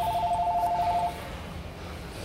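An electronic two-tone trilling ring, like a telephone ringer, warbling rapidly and cutting off about a second in.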